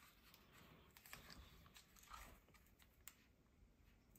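Near silence, with a few faint paper rustles and light taps as loose postage stamps are handled and sorted by hand; one slightly sharper tick near the end.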